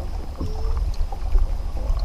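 Steady low rumble of wind on the microphone and water against the hull of a fishing boat drifting on a lake.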